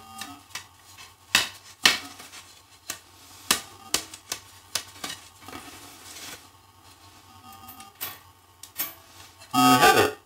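Sharp knocks and clicks, about a dozen spread irregularly, from the wooden frame pieces and steel blade of a home-made bucksaw being handled and fitted together. Near the end a short, loud musical note sounds.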